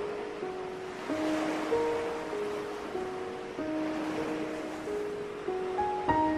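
Slow, gentle instrumental music of single held notes over the wash of ocean waves. A wave surges up and fades away in the middle.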